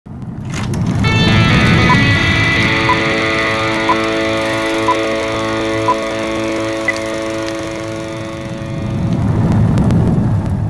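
Channel logo intro music: a sustained synth chord held over a low rumble, with a short tick about once a second. The rumble swells again near the end.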